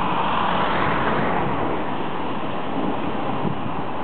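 Steady rush of a shallow stream running over stones, a little fuller in the first second and then easing slightly.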